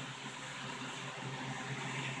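Quiet room tone between words: a faint steady low hum under a thin even hiss.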